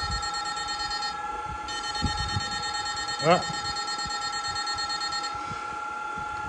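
Opened 16-FET electric-fishing inverter running on test, giving a steady high-pitched electronic whine of two tones with higher overtones; its pitch depends on the pulse-width and frequency settings. The upper overtones cut out briefly a little after a second in and again near the end, and a short rising voice sound comes about three seconds in.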